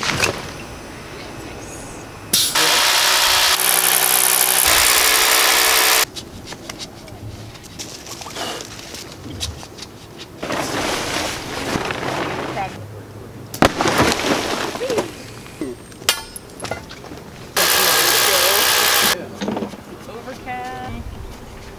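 Compressed-air blowgun blowing rock dust out of a drilled blast hole in a boulder, in two long hissing blasts: the first lasts about three and a half seconds, the second, near the end, about a second and a half.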